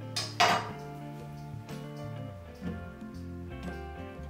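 Background music with steady tones, and a sharp metallic clatter about half a second in as a metal palette knife is set down on the table.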